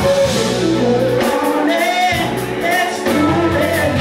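Live band playing with a singer. The bass end drops away for about a second, starting a little over a second in, while the vocal carries on.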